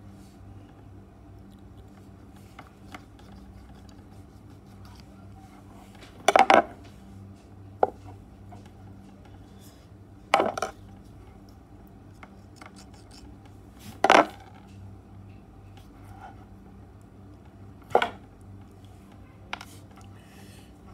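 Four loud, short, sharp clacks a few seconds apart, with a few faint clicks between, from hands working a mains cable and plug with small tools.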